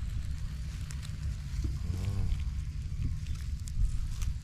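Wind rumbling on the microphone over the faint crackle of a small straw-and-ember fire, with a brief murmured voice sound about two seconds in.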